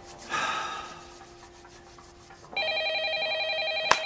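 A landline telephone ringing: the bell starts about two and a half seconds in with a fast, trilling ring. A short swish fades over the first second, and a sharp click comes just before the end.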